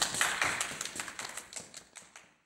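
Hand claps from a few people, rapid and irregular, dying away.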